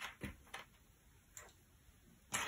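Faint, scattered clicks of cardboard jigsaw pieces being picked up, slid and set down on a tabletop: a quick cluster of taps in the first half-second, then one more near one and a half seconds.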